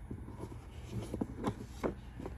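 A few light clicks and taps, spaced roughly half a second apart, as cards are handled and laid down on a table during a tarot reading.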